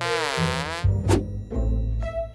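Short buzzy comic sound effect from the cartoon's soundtrack: a tone whose pitch dips down and comes back up, lasting under a second. It is followed by a click and low background music.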